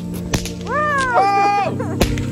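Background music with steady low notes. About a third of a second in there is a single sharp crack, and then a high, pitched voice-like call rises, wavers and falls away over about a second.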